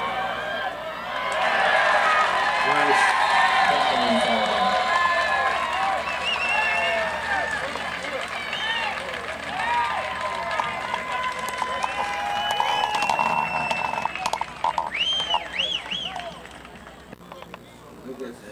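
Football spectators cheering and shouting, many voices at once, loudest in the first few seconds. A few high whooping calls stand out shortly before the noise dies down near the end.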